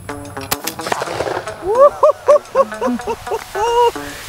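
A single shotgun shot about half a second in, followed by a run of loud laughter.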